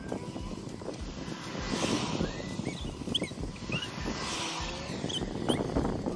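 Road traffic outdoors: vehicles passing by, their noise swelling and fading twice, with a few short high chirps over it.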